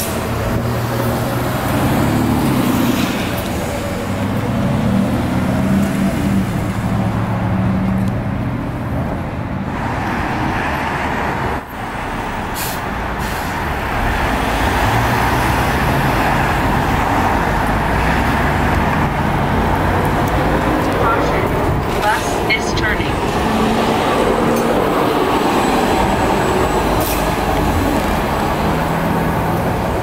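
Street traffic with a New Flyer E40LFR electric trackless trolley moving along the avenue among passing cars, their engines humming, with voices nearby.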